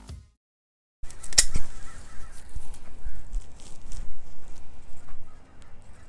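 Leafy spearmint stems rustling and snapping as they are picked by hand. The sound starts about a second in with a sharp click, then goes on as scattered small clicks and rustling.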